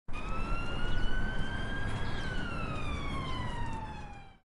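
Siren wailing: one slow rise in pitch over about two seconds, then a longer fall, over a low rumble.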